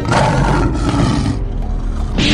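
A monster's roar, loud, fading out about a second and a half in.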